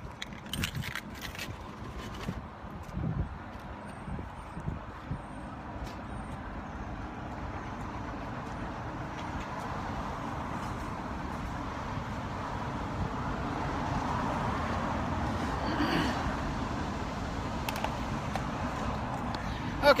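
Steady road traffic noise from a nearby highway that swells gradually toward the middle. There are a few short knocks in the first couple of seconds.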